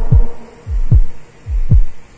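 Deep, heavy bass thuds in a heartbeat rhythm, in pairs about three-quarters of a second apart, each thud dropping in pitch. The rest of the background music has fallen away.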